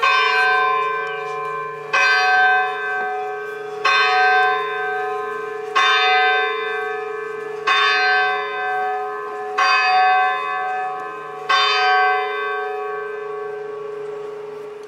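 A deep church bell tolling slowly, seven strikes about two seconds apart, each ringing on and fading before the next; the last strike is left to die away near the end.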